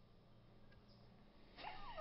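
Near silence: room tone with a faint steady hum, then a person starts laughing near the end.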